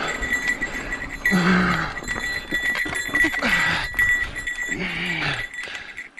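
A mountain biker breathing hard on a climb: three loud voiced exhales, about two seconds apart, each falling in pitch.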